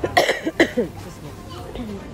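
A woman coughing, a few short coughs in the first second.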